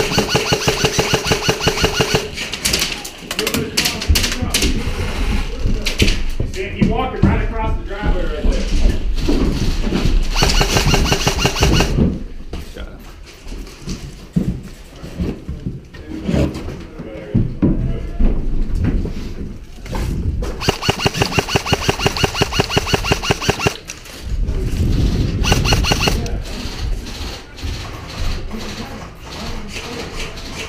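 Airsoft electric rifles firing full-auto bursts, each a rapid string of evenly spaced clicking shots. There are three long bursts, at the start, about ten seconds in and about twenty seconds in, with scattered shorter shots between them.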